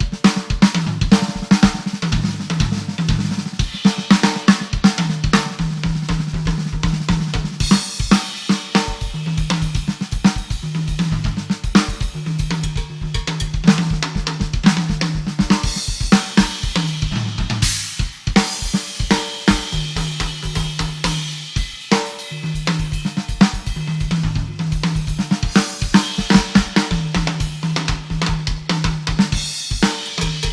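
A drum kit played live, fast and without a break: snare, bass drum and tom strokes with cymbals and hi-hat.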